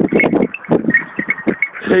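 Terriers growling and snarling as they bite and worry a badger, in a string of short, rough, irregular bursts.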